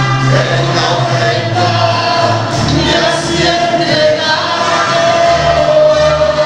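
Mariachi band playing, with voices singing: long held melody notes over a low bass line.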